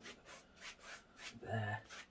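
A wide blending brush sweeps side to side across wet oil paint on a canvas, a soft rubbing at about three strokes a second, working the cloud brush marks into the sky. Near the end there is a brief low hum of voice.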